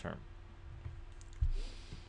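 A low thump about one and a half seconds in, followed by a short rustle as the paper worksheet is shifted on the desk.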